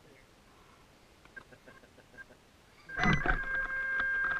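A clatter about three seconds in, then a loud, steady pitched tone with several overtones that keeps sounding.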